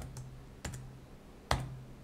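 A few separate keystrokes on a computer keyboard: about four sharp clicks spaced unevenly through the two seconds, the loudest about one and a half seconds in.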